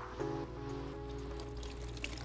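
Soft background music with held chords that change once shortly after the start, over a faint trickle of water from the wet wig in the sink.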